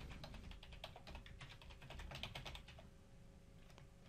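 Faint computer keyboard typing: a quick run of key clicks that thins out near the end.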